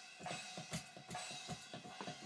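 Faint hi-hat splash cymbal sounds from EZdrummer drum software, played through laptop speakers and triggered by an electronic drum kit's hi-hat pedal: a run of soft, short hits.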